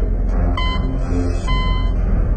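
A deep, steady low rumble with a short electronic beep repeating about once a second, typical of intro sound effects.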